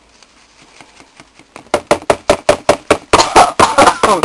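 Cardboard box of washing soda being shaken and tapped over a plastic tub to empty out the last of the powder: a fast, even run of knocks, about seven a second, starting about a second and a half in and growing louder.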